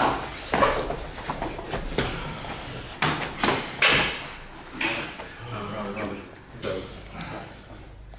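Boxing gloves landing punches at close range: a quick, irregular run of sharp slaps and thuds. The blows are densest in the first four seconds and thin out after.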